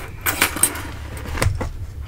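A bunch of metal keys on a ring jingling in several light clinks as it is handled and slid across a desk, most of them in the first second and one more about halfway through.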